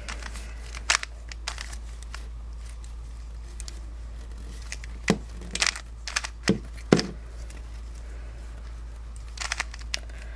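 Stickerless Dayan Guhong 3x3 speed cube being turned by hand: a handful of sharp plastic clicks as the layers are twisted, one about a second in, a cluster in the middle and a few near the end.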